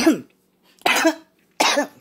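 A person coughing in a fit: the end of one cough, then two more short coughs, about a second in and near the end.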